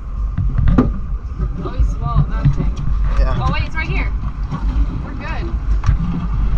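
Steady low wind rumble on the microphone aboard an open boat, with a single sharp knock just under a second in and muffled voices in the middle.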